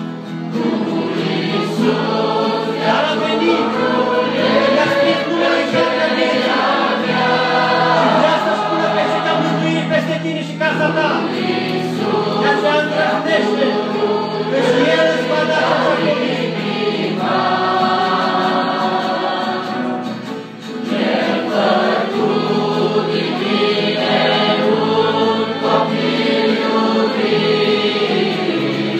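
A large mixed choir of men and women singing a hymn together, in sustained phrases with a short break between lines about twenty seconds in.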